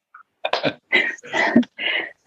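A man's breathy, near-voiceless laughter: four short exhaled bursts about a beat apart after a brief silence.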